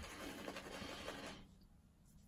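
Boar-bristle shaving brush working lather onto a stubbled face: a faint, rapid scratchy rubbing that stops about one and a half seconds in.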